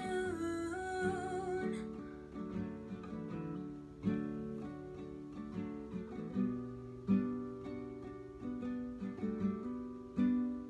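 Acoustic guitar playing slow picked and strummed chords in an instrumental passage of a song. A held, wavering sung note trails off in the first two seconds.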